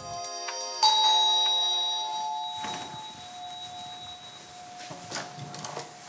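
Doorbell chime sounding once about a second in, its tones ringing on and fading away over the next few seconds, over soft background music.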